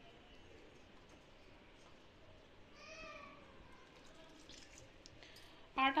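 Faint hand-mixing of crumbly bati dough in a glass bowl as milk is worked in. About halfway through, one short pitched call rises and falls above it.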